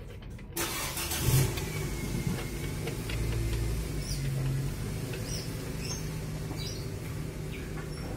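An engine running steadily. It comes in suddenly about half a second in, with a brief louder swell just after a second.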